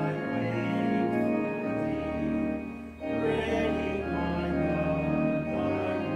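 Church organ playing a hymn in sustained chords, with a congregation singing along. There is a short break between phrases about three seconds in.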